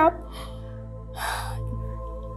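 A crying woman's sharp, tearful intake of breath, a sob-gasp about a second in, just after a word breaks off. It is heard over a soft, steady background music score.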